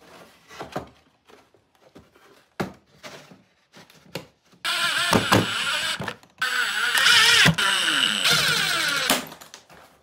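Light knocks and clicks of a plywood ring being handled and fitted into a suitcase lid. Then, from about halfway, a Milwaukee Fuel cordless driver runs loudly in a few bursts, driving screws through the lid into the wood, its motor pitch falling under load.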